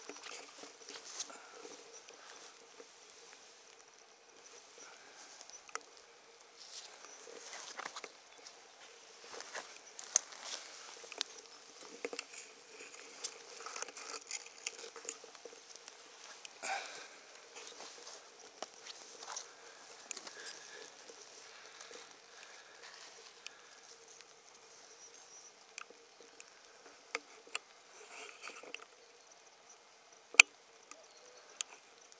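Faint, irregular rustling and crackling of dry grass and leaf litter under footsteps, with scattered light clicks.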